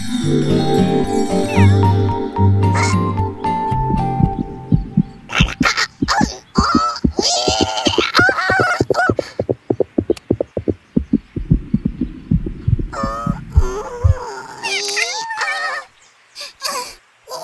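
Cartoon soundtrack: a short music phrase, then a fast, regular thumping like a heartbeat sound effect for about ten seconds, over wordless character vocalizations.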